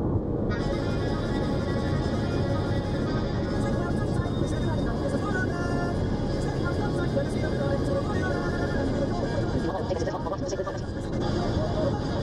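Steady road and engine noise inside a car cabin at highway speed, with music playing faintly underneath.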